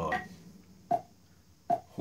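Metronome ticking at the song's slow tempo of about 73 bpm, two ticks a little under a second apart.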